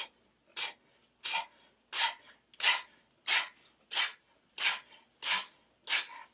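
Beatboxing 't' sounds made with the mouth: a crisp, breathy 't' with no vowel, repeated about ten times at an even pace of about three every two seconds.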